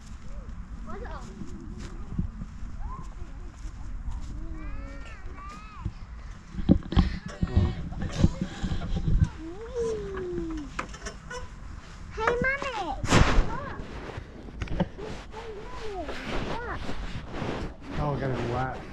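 Young children's voices at play: wordless calls and squeals that rise and fall, loudest about two-thirds of the way through, over a steady low rumble.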